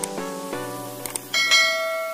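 Outro music playing under subscribe-button sound effects: a click near the start and another about a second in, then a ringing bell chime from about a second and a half in.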